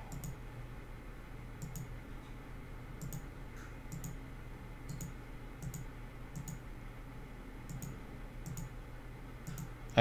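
Computer mouse button clicking, about twenty single clicks at uneven intervals, picking polygons one after another, over a faint low hum.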